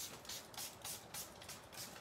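A water mister spraying over powdered colour on watercolour paper to activate it: a faint, rapid run of short spritzes, about five a second.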